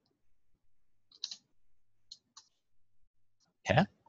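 A few light computer keyboard keystrokes, spaced out over about a second and a half, as a percentage value is typed into a spreadsheet cell and entered.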